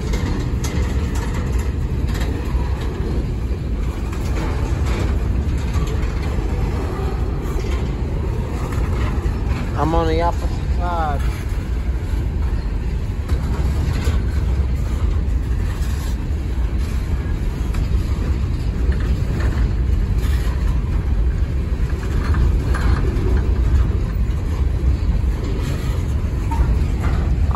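Empty coal hopper cars rolling slowly past on the rails: a steady low rumble of steel wheels with occasional clacks and knocks.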